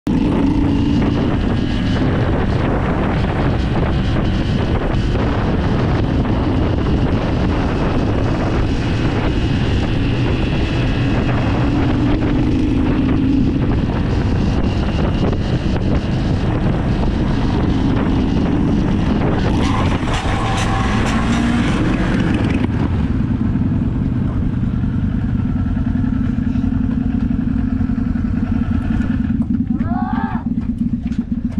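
Motorcycle engine running under way, its pitch rising and falling with throttle and gear changes, with wind rushing over the microphone. About two-thirds through there is a few seconds of louder hiss, and after that the engine settles to a lower, steadier note as the bike slows to a stop.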